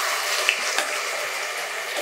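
Wet blended onion, tomato, ginger and garlic paste poured from a blender jug into hot oil in a pot, sizzling and spattering steadily as it hits the oil, with one light knock about half a second in.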